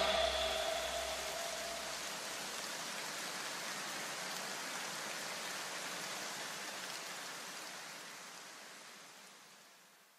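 An even hiss like rain, trailing on as the electronic background music ends. A low hum dies away within the first few seconds, and the hiss fades out near the end.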